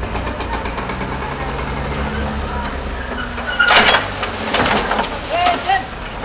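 A garbage truck's engine running steadily, with a short, loud burst of noise about two-thirds of the way in.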